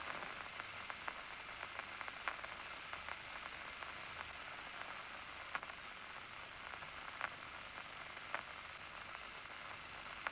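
Loudspeaker monitor of a locust's nerve-cord recording at rest: a steady static hiss with a few faint scattered clicks and no large spikes, because the eye is not being stimulated.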